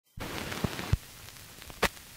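Surface noise of an old phonograph record before the music begins: faint hiss and crackle, heavier in the first second, with three sharp pops, two close together near the middle of the first second and one near the end.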